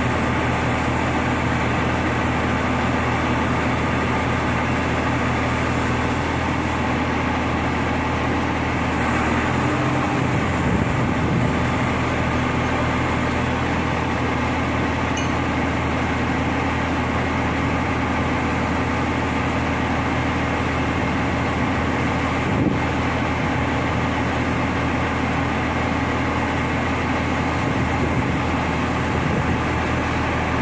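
SANY STC300TH truck crane's diesel engine running steadily, its low drone shifting in pitch about ten seconds in. A single sharp knock sounds about three-quarters of the way through.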